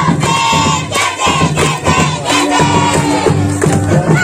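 Santal Sohrai festival dance music: drums struck in a quick, steady beat with voices singing, over the noise of a dense crowd.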